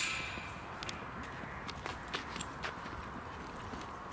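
Faint, irregular footsteps of a person walking over grass and earth, with light scattered clicks over low outdoor background noise.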